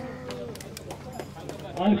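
A man's voice over a loudspeaker holding the last syllable of a name, trailing off about a quarter of the way in, then a low murmur of crowd noise with scattered faint clicks.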